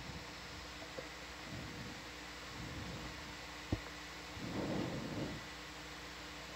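Low steady hiss of room tone with a faint hum, broken by one short click about halfway through and a brief muffled sound a little after it.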